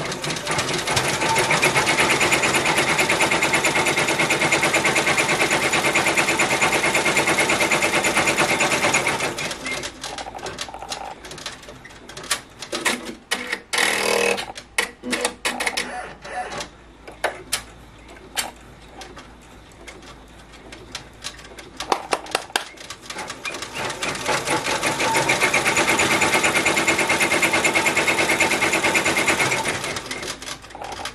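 Ricoma embroidery machine stitching at speed, a dense, fast run of needle strokes tacking down chunky chenille yarn. About nine seconds in it gives way to slower, irregular clicks and knocks for some fifteen seconds, then the fast stitching starts up again near the end.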